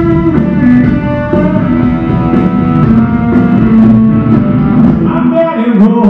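Rock and roll band playing live: electric guitars over a drum kit, played loud and steady.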